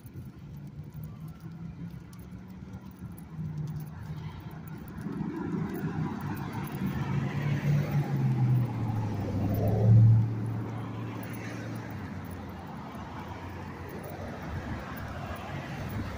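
A motor vehicle passing by: its low engine hum grows louder, is loudest about ten seconds in as its pitch drops slightly, then fades away.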